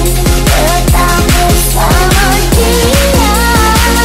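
Jungle Dutch electronic dance music played from a DJ controller: a fast, steady kick drum under a synth lead that slides up and down in pitch.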